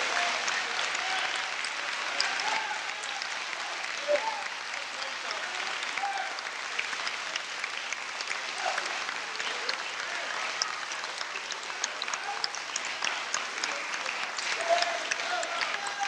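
Audience applauding steadily, a dense patter of claps with a few voices calling out in the crowd.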